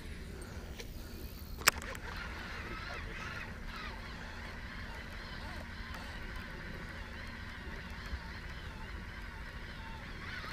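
Birds calling, with a wavering pitch, and one sharp click a little under two seconds in.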